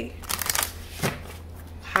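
A deck of tarot cards being shuffled by hand: a few short papery swishes of cards sliding through the hands, the sharpest about a second in.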